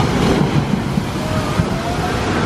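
Water rushing steadily down a log flume's chutes into the splash pool, a loud even rush with a low rumble.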